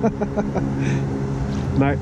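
A fishing reel being wound in against a hooked small redfin, with a run of light irregular clicks, over a steady low engine-like hum. A short laugh comes near the end.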